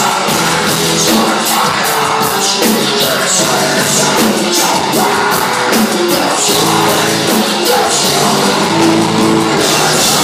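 Metal band playing live: electric guitars and drums with a singer's vocals over them.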